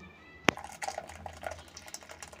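A sharp click about half a second in, then faint sloshing and handling of blended litchi juice in a steel vessel as it is readied for straining.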